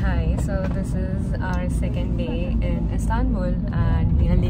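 A woman talking inside a car cabin, over the car's steady low engine and road rumble.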